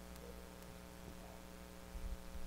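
Faint steady electrical mains hum with light hiss, a pause with no speech.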